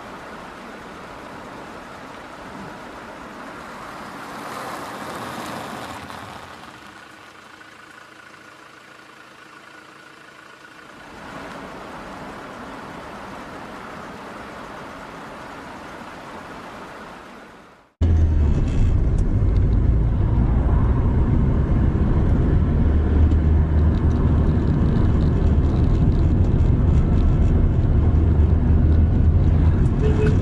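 Dashcam audio of a moving car: steady road and vehicle noise. About two-thirds of the way through, a sudden cut brings a much louder, deeper steady rumble from another car's dashcam.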